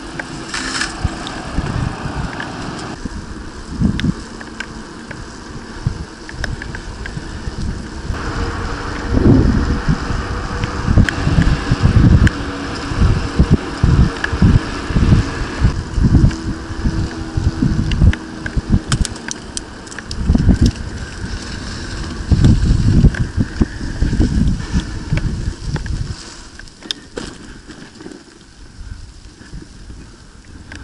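Wind buffeting the microphone of a camera on a moving bicycle in irregular low gusts, over a steady hiss of tyres rolling on asphalt. The buffeting dies down and it all goes quieter near the end as the bike slows.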